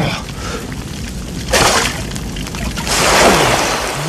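Fire being put out: two bursts of rushing, hissing noise, a short one about a second and a half in and a longer one near the end.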